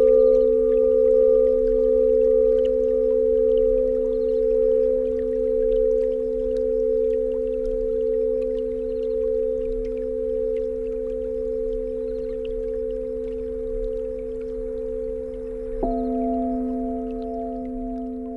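Crystal singing bowls ringing in long, steady, overlapping tones that slowly fade. About 16 seconds in, a bowl is sounded again and a higher tone joins.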